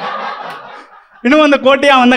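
A small audience chuckling and laughing, dying away within about a second. A man's voice then starts speaking through the microphone.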